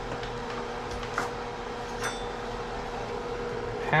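Steady low hum with a faint constant tone, with one faint tap about a second in.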